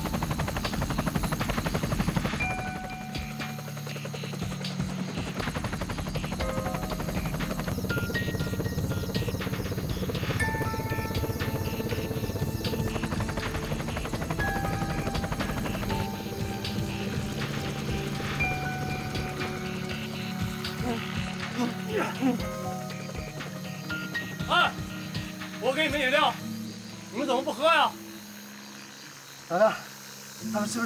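Helicopter rotor and engine droning steadily under a tense film score of sparse held notes. In the last few seconds the drone fades and short muffled vocal cries come through, from a gagged person.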